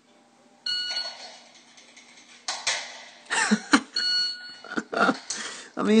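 Electronic shot-timer beep, a short steady tone, about a second in, and a second identical beep about three seconds later, the start and par signals of a timed draw drill. Between the beeps come a few short knocks and rustles of gear handling.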